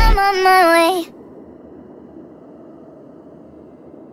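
A pitched-up, sped-up female singing voice holds a final wavering note alone, without the backing music, and cuts off suddenly about a second in. After that only a faint steady hiss is left.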